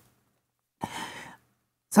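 A man's single audible breath, about half a second long, a little under a second in.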